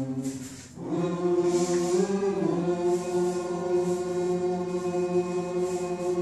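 A choir singing: a short break for breath under a second in, then long held chords with a small shift in pitch around two seconds in.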